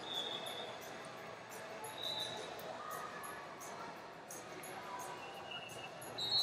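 Hall ambience of a busy wrestling arena: a low murmur of distant voices, scattered knocks and thumps, and a few brief high chirps, about three of them.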